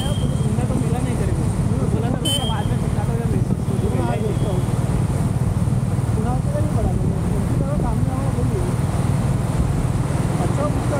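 Steady low rumble of road and wind noise from a vehicle moving through city traffic. Two brief high beeps sound near the start, about two seconds apart.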